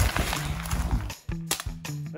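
Background music with a steady low note, and a short sharp crack about one and a half seconds in.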